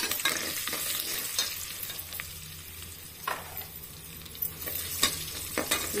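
Tempering of mustard seeds, chana and urad dal, spices, chillies and curry leaves sizzling in hot oil and ghee in a pressure cooker, stirred with a steel slotted ladle. The sizzle is a steady hiss, with a few short clicks and scrapes as the ladle touches the pot.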